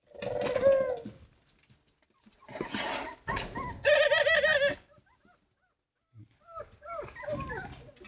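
Caged doves cooing: a few separate calls, one near the start and a wavering one about four seconds in.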